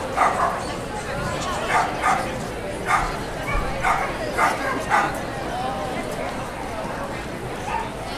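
A dog barking: about nine short, sharp barks in quick succession over the first five seconds, then stopping.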